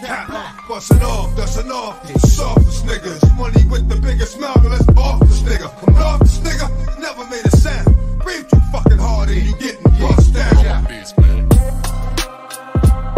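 Hip hop track with rapping over a heavy bass line and a steady drum beat.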